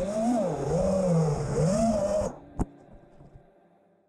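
FPV racing quadcopter's brushless motors and props whining, the pitch swelling and dipping with the throttle. The whine cuts off abruptly a little past halfway, followed by a single sharp knock as the quad comes down in the grass.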